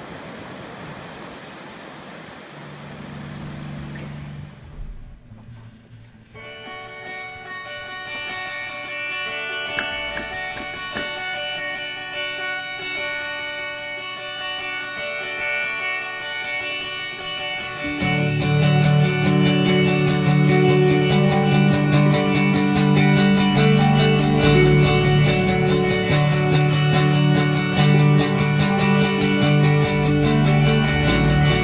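Ocean surf washing on a beach, fading out within the first few seconds as a low note comes in. Then an indie rock band plays live on a single room microphone: sustained electric guitar chords ring on their own until, about eighteen seconds in, bass and drums join and the music gets louder.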